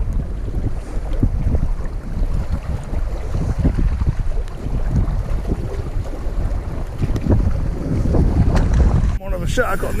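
Wind buffeting the camera microphone: a loud, uneven low rumble throughout, briefly dropping out near the end.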